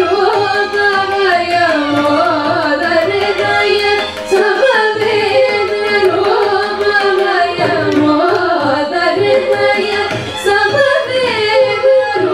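Live Carnatic music: two female vocalists singing a heavily ornamented melody with gliding pitches, a violin following the voice, and a mridangam keeping the rhythm underneath.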